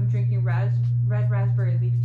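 A woman talking, with a loud steady low hum running under her voice.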